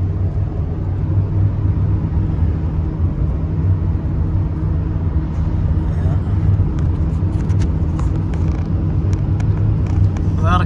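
Steady low engine and tyre drone of a vehicle cruising at highway speed, heard from inside the cabin. A few light ticks or rattles come in the second half.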